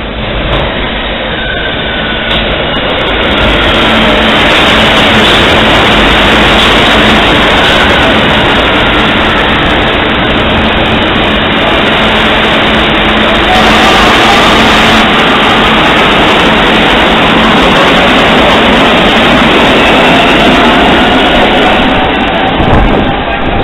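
Metro train running past the platform at close range: a loud, continuous rumble and rail noise that builds over the first few seconds, then holds steady, with a faint whine sliding up and down in pitch.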